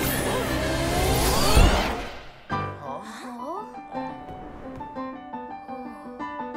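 Cartoon magic sound effect: a dense, swirling whoosh with gliding tones, loudest about a second and a half in and gone by about two seconds. After a few rising swoops, a keyboard begins playing a quick run of notes from about three and a half seconds in.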